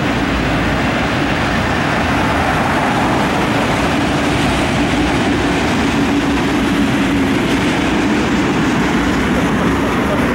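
Freight train's autorack cars rolling past: a steady, even noise of steel wheels on the rails.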